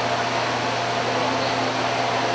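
Large barn circulation fans running: a steady rushing noise with a low steady hum underneath.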